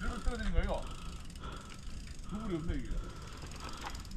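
Mountain bike's rear freehub ratchet ticking rapidly as the bike is pushed downhill on foot, with the wheel freewheeling. Two short wordless voice sounds come near the start and about two and a half seconds in.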